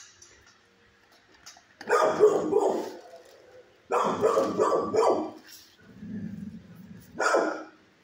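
Dog barking in three loud bouts: one about two seconds in lasting a second, a longer one about four seconds in, and a short one near the end.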